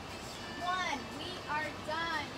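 High-pitched voices in short, wavering phrases.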